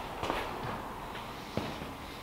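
A few footsteps on a concrete floor, heard as faint, scattered knocks.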